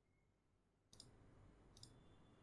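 Two faint computer mouse clicks, one about a second in and the other near the end, over faint room hiss.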